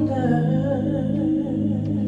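Live worship music: a woman sings a slow, drawn-out melodic line into a microphone over sustained keyboard chords, her voice fading about halfway through while the chords hold.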